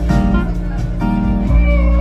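Live band music played loudly through a PA and heard from within the crowd: electric guitars over a heavy bass, with a few sliding, bent notes.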